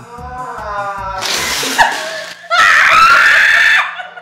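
Music with a steady beat, then about a second in a loud spray of water spat out of a mouth, followed by two women shrieking with laughter, the loudest part, which breaks off just before the end.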